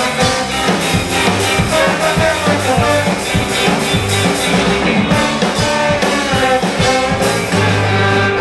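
A live ska band playing through a PA: electric guitars, bass, drums and horns, with a steady beat.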